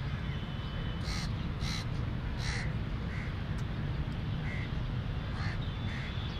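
Crows cawing, about six short caws spread across a few seconds, over a steady low rumble.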